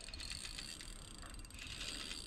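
Spinning fishing reel being cranked, a faint quick ticking, as a hooked fish is reeled in.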